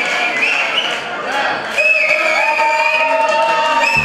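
A crowd of guests singing and cheering over music, with several long, held high notes sliding in pitch.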